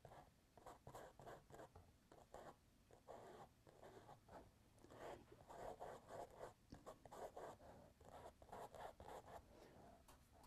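A small paintbrush faintly brushing and dabbing paint onto a mural's surface, in quick, irregular short strokes.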